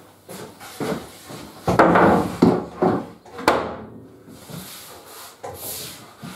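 A large sheet of three-quarter plywood being handled and laid down on a table saw: irregular knocks and wood scraping on the table, loudest about two seconds in, with a sharp click about three and a half seconds in.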